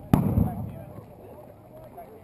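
A single loud pyrotechnic bang just after the start, a simulated explosion of the kind set off in airsoft games, its low boom dying away over about half a second.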